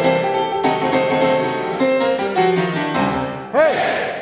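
Grand piano playing a boogie-woogie phrase of held chords that change every half second or so. Near the end comes a short, loud shouted "hey!".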